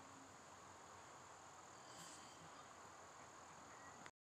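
Near silence, with a faint, steady high-pitched insect drone in the background.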